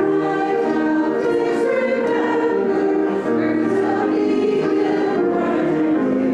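Congregation singing a hymn together, a group of voices moving through long held notes in a steady melody.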